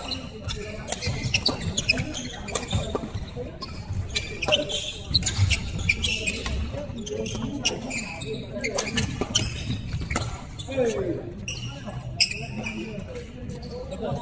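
Badminton rally: rackets striking the shuttlecock in sharp, irregular cracks, with players' footsteps and shoe squeaks on a wooden court floor, echoing in a large sports hall.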